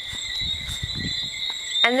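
A steady, high-pitched chorus of crickets, with low rustling and handling noise as the camera moves through leafy plants.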